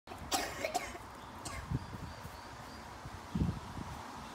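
A young child's short, breathy vocal sounds, coughs or squeals, in the first second and a half, followed by a few dull low thumps, the loudest near the end.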